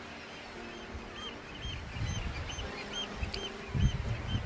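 A bird calling over and over, a short high note repeated two or three times a second, with a low rumbling noise that builds in the second half.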